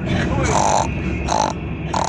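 A person's voice making three short grunts, over the steady low rumble of a moving car's cabin.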